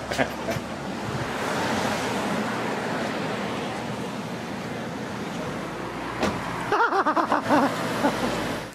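Street traffic: a passing car's noise swells about a second and a half in and slowly fades. A brief voice is heard near the end.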